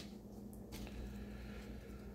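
Faint rustle of trading cards being drawn out of an opened foil booster pack and handled, starting about a second in, over a low steady hum.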